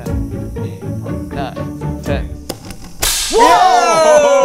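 A spark igniter clicks, then about three seconds in comes a sudden loud whoosh as the gas in a clear plastic tube capped with a two-liter bottle ignites, over background music.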